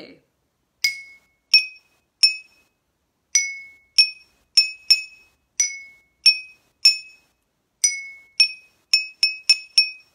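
Three drinking glasses, each filled with a different amount of water, struck with a thin stick to play a short melody; each strike gives a brief bell-like ring, and the water levels set the different pitches. About twenty strikes in an uneven rhythm, coming quicker near the end.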